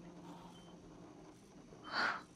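Faint room tone with the tail of a sustained music note dying away at the start, then one audible intake of breath near the end.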